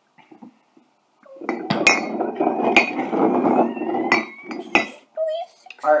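Ceramic coffee mugs shuffled around a tabletop: a scraping rumble that lasts about three and a half seconds, with about five sharp clinks as the mugs knock together.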